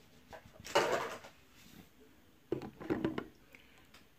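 Toiletry bottles being handled and set down: a brief clatter about a second in, then a few light knocks and clicks near three seconds.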